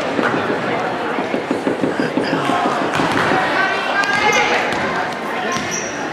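Basketballs bouncing on a hardwood gym floor, many short bounces one after another, with the voices of people in the gym behind them.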